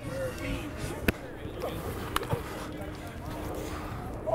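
Outdoor football practice-field ambience: faint distant voices over a steady background noise, with two sharp slaps about one and two seconds in.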